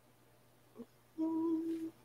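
A person humming a short, steady "mm" on one pitch for under a second, after a pause, like a thinking "hmm" before answering.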